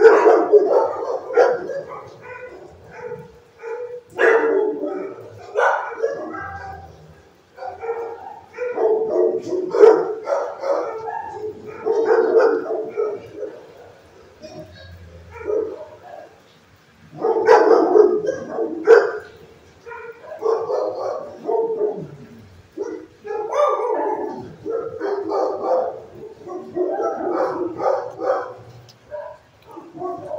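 Dogs in a shelter kennel barking over and over in bursts, with short lulls between volleys, the barks ringing off hard block walls.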